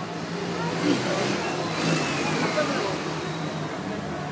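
Street noise: a vehicle engine running steadily at a low pitch, with the voices of a crowd in the background.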